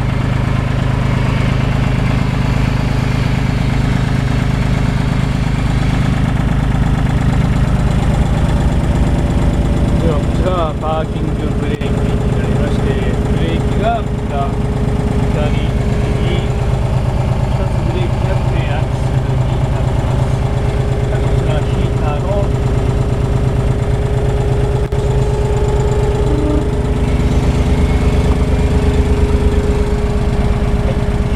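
Komatsu WA20-2E wheel loader's small three-cylinder diesel (1,200 cc, 22 ps) idling steadily, heard from inside the cab. A steady higher tone joins about a third of the way in.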